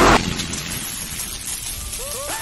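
Intro sound effect under an animated logo title card: a loud rushing noise cuts off sharply just after the start, then a softer steady hiss. Faint rising tones of the intro music come in near the end.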